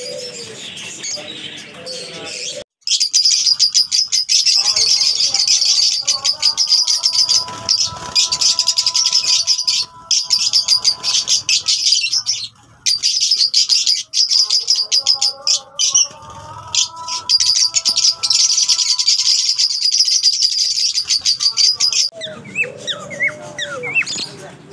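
A flock of Fischer's lovebirds chattering, a dense stream of shrill high chirps that starts suddenly after a short break about three seconds in and cuts off shortly before the end. A softer bird twittering comes before it, and a held steady tone sounds underneath at times in the middle.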